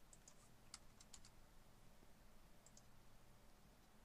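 Near silence with a few faint, sharp clicks from working a computer while editing software settings, most of them in the first second and a half and a pair more near the end of the third second.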